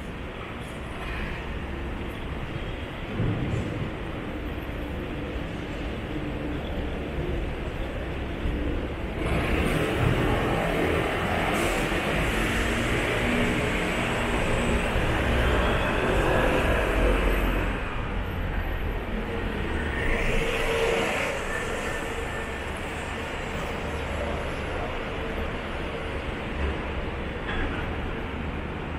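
City street traffic: a steady noise of passing road vehicles, growing louder between about nine and eighteen seconds in as vehicles pass close by.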